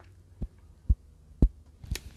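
Four soft, low thumps about half a second apart, over a faint steady low hum.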